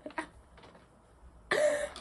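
A woman's short, breathy vocal outburst, a cough-like shout, about one and a half seconds in, after a moment of near quiet.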